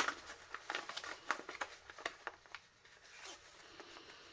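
Paper tissue and a clear plastic sheet being crumpled and handled, making irregular crinkling rustles that thin out in the second half.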